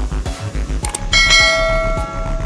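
Background music with a steady beat; about a second in, a bright bell chime rings out and sustains, the notification-bell sound effect of a subscribe-button animation.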